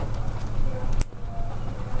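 Plastic sheet-protector pages of a ring binder being handled and turned, rustling, with one sharp click about a second in, over a steady low hum.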